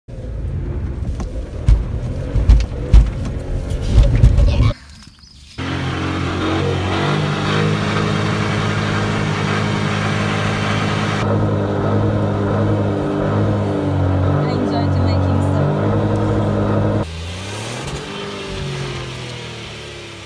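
Fiat 500X engine revved hard and held at high, steady revs for about ten seconds, then dropping back with falling pitch. This follows a few seconds of irregular rumble and loud thumps.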